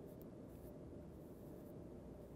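Faint, steady rubbing of a paintbrush on canvas, barely above room tone.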